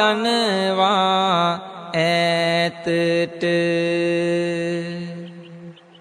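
A Buddhist monk's voice chanting Sinhala verses in the melodic kavi bana style: wavering turns of pitch in the first second and a half, a few short breaks, then one long held note that fades out near the end.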